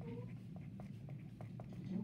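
Pen writing on paper: short scratchy strokes a few times a second over a steady low hum. A brief pitched voice-like sound comes just after the start.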